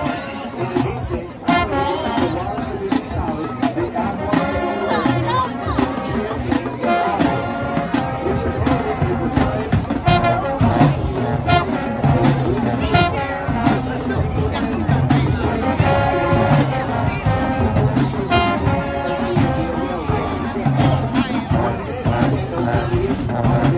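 Marching band music: brass instruments, including sousaphones, playing loudly over crowd chatter.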